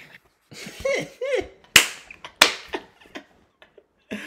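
Short yelping cries, then two sharp cracks less than a second apart, followed by a few faint clicks.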